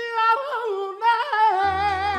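A male lead singer sings a gliding, ornamented line with almost nothing under him. About one and a half seconds in, the band's accompaniment comes in with a low bass and a held chord, and he holds a long note with vibrato.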